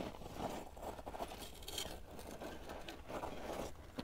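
Rubber tires and chassis of an Axial Capra RC rock crawler scraping and crunching against sandstone walls as it scrubs through a tight rock slot; a faint, irregular scraping.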